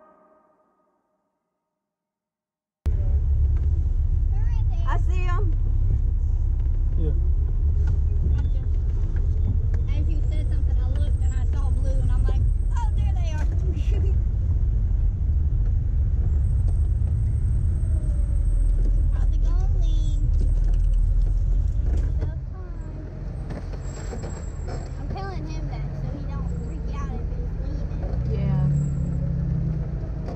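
Silent for the first few seconds, then a 4x4 driving along a dirt trail: a steady low rumble of the engine and running gear, easing somewhat about two-thirds of the way through, with faint talking underneath.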